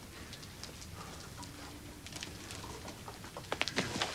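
Hanging metal chain being tugged: scattered light clicks and rattles, with a quick cluster of sharper clinks near the end.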